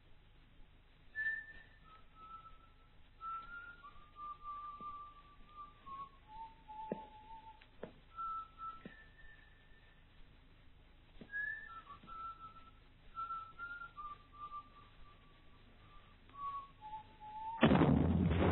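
A person whistling a slow tune, the same phrase twice over, with a few faint knocks in between. Near the end a sudden loud bang cuts in and the noise carries on.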